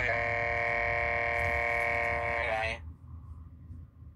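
A single long tone held at a steady pitch, rich in overtones, sliding briefly at its start and end and stopping just under three seconds in.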